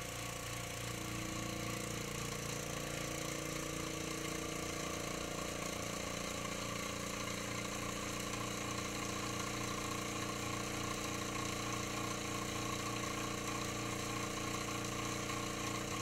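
Benchtop laboratory vacuum pump running steadily, a constant motor hum drawing a water sample through a membrane filter on a filter flask. Its pitch eases slightly lower over the first couple of seconds, then holds steady.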